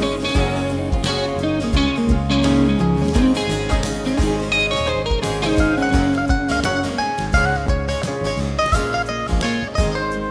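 Live country band playing, with electric guitar picking over bass and acoustic guitar and a steady beat.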